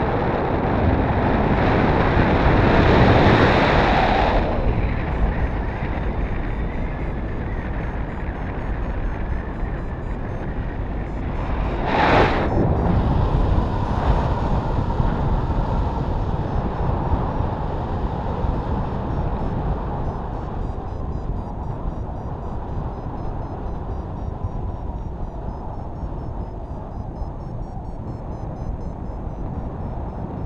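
Airflow rushing over an action camera's microphone in paraglider flight: a steady wind roar that swells over the first few seconds, gusts sharply about twelve seconds in, then eases.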